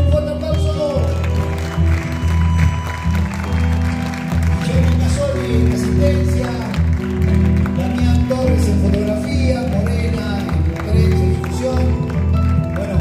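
Live acoustic band playing: acoustic guitar, bandoneon and a drum, with a man singing over them.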